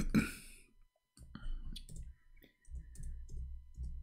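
Computer keyboard keystrokes as a search term is typed: irregular sharp clicks with dull low knocks beneath them, starting about a second in.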